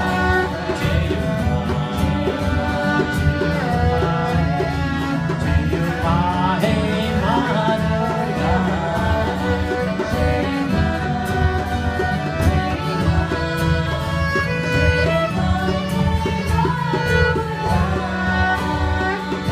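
Kirtan devotional music played live on harmonium, strummed acoustic guitar and violin, with singing over a steady sustained accompaniment.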